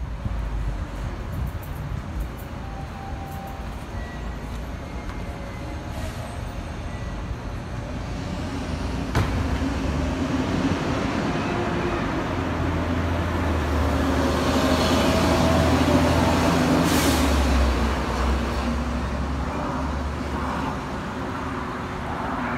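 Street traffic dominated by a heavy vehicle's engine rumble, building after the middle and easing off near the end, with a short hiss about three-quarters through.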